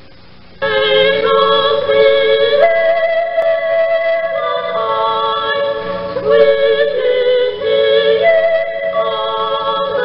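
A choir singing a Christmas carol in sustained, slowly changing chords. It comes in suddenly about half a second in, over a faint tape hiss.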